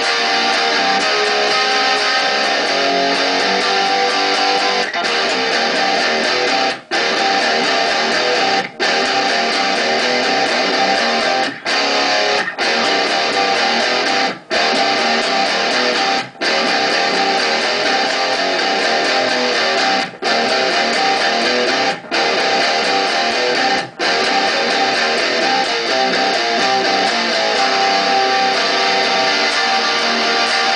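Electric guitar played through a small Marshall MG combo amplifier, strumming a continuous rhythm-guitar chord riff. The sound is broken by about nine brief, abrupt stops, the longest after roughly seven, fourteen and twenty-four seconds.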